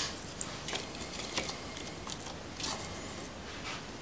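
Dry pieces of tree bark being handled and picked out of a plastic bucket: scattered light clicks, taps and rustles spread over a few seconds.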